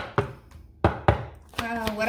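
A deck of tarot cards being handled on a tabletop: four sharp clacks of cards struck and tapped down in two quick pairs. A voice begins near the end.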